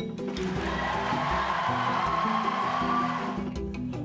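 Background music with steady low notes, under an even noisy wash that fades out about three and a half seconds in.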